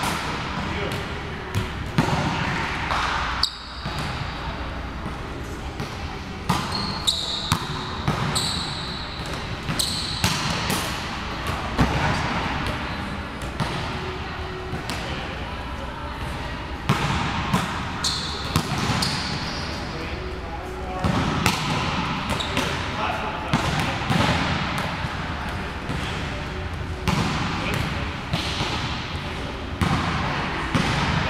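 Volleyballs being hit and bouncing on the court floor of a large gym: sharp slaps and thuds every few seconds, with short high sneaker squeaks.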